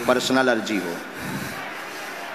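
A man's voice for about the first half-second, then a steady hiss of background noise through the microphone, with faint rubbing.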